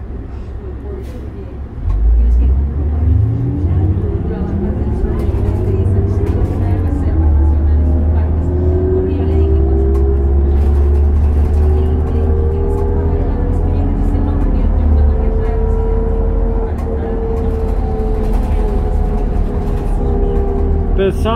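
Diesel engine of a New Flyer D40LF city bus, heard from inside the passenger cabin, revving up about two seconds in as the bus accelerates, then a steady low drone with a whine that climbs slowly in pitch.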